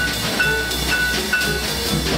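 Free jazz quintet playing, with drums, piano and bass underneath. A horn repeats a short high note four times, about every half second.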